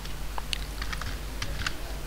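Computer keyboard keys clicking, a handful of light, irregular keystrokes, over a low steady hum.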